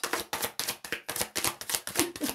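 A deck of tarot cards being shuffled by hand, overhand, a quick uneven run of soft card slaps and clicks.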